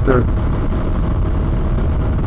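A Husqvarna Svartpilen 401's single-cylinder engine running steadily at cruising speed in sixth gear, under a low, even rush of riding wind on the microphone.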